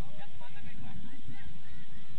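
Football players shouting and calling to each other across the pitch, several short overlapping calls from a distance, over a low irregular rumble.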